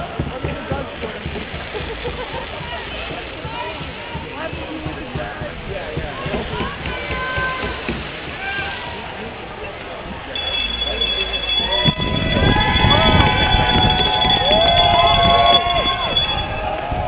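Crowd of many voices talking and calling out at once. About ten seconds in a steady high-pitched tone joins. About twelve seconds in it all gets louder, with a low rumble and shouting voices.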